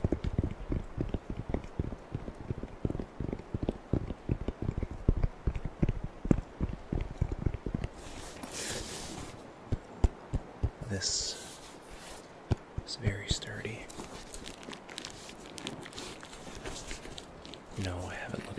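Fingers tapping rapidly and scratching on the black fabric case of a Kia first aid kit held close to the microphone, ASMR-style. After about eight seconds the taps thin out into scattered clicks and a few short rustles.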